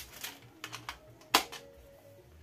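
Small glass essential-oil bottles and their cardboard gift box being handled: a few light clicks and taps, the loudest about a second and a half in.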